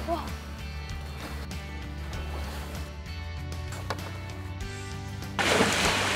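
Background music with sustained low notes; about five seconds in, a sudden loud splash of churning water as an alligator lunges at food dangled into its pool.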